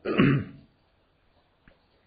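A man coughs once, a short throaty clearing of the throat.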